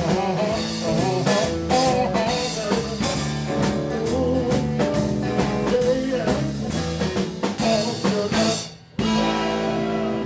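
Live blues band playing: guitars over a drum kit beat, with a bending melody line. Near the end the sound drops away for a moment and comes back suddenly on held chords.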